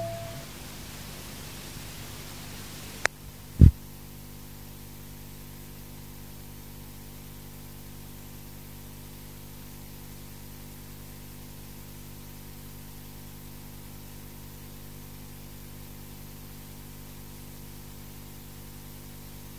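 Steady hiss and low hum of the recording's background noise after the music stops. There is a sharp click about three seconds in and a louder dull thump just after it.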